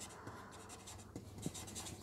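Faint rustle of a marker pen moving against a sheet of paper, with a few light clicks or taps a little past halfway.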